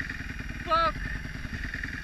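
Kawasaki KX250F dirt bike's single-cylinder four-stroke engine running steadily at low revs while the bike rolls along, its firing pulses even with no revving.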